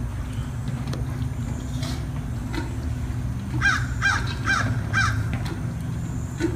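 A bird's harsh call, repeated four times about half a second apart in the second half, over a steady low hum.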